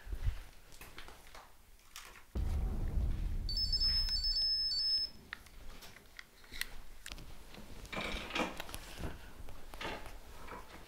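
Footsteps and knocks. A low rumble comes in suddenly about two seconds in and cuts off near the middle, while a high electronic beeping plays over its last second and a half.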